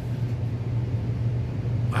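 Room air conditioner running with a steady low hum, loud enough that it threatens to drown out a voice.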